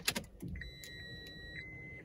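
A 2012 Honda CR-V's 2.2-litre diesel engine being started: a brief clatter of cranking, then a steady low idle with a thin, steady high-pitched tone over it.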